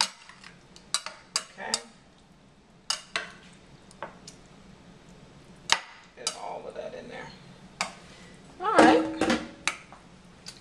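Metal fork clinking and scraping against a plastic measuring cup and a glass baking dish as a cream-and-egg mixture is worked out of the cup and stirred over sliced zucchini: a dozen or so sharp, irregular clicks. A louder, short wavering voice sound comes near the end.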